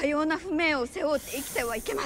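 A woman speaking Japanese in a raised, strained voice, with a hiss about a second in that lasts most of a second.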